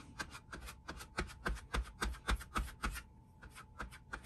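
A small glue brush spreading contact cement onto a leather panel. It makes quick brush strokes, several a second, which ease off and grow fainter about three seconds in.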